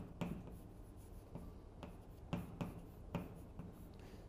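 Chalk on a blackboard as characters are written, heard as a string of short, separate taps and scrapes, one per stroke.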